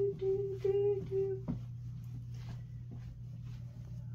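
A voice humming four short notes on one pitch during the first second and a half, then quiet apart from a steady low electrical hum and faint shuffling.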